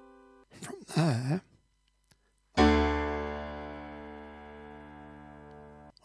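A piano chord struck about two and a half seconds in and left to ring and slowly fade; it is named just after as a D major chord in second inversion. Before it, the previous chord's tail dies away and a short sigh-like vocal sound comes about a second in.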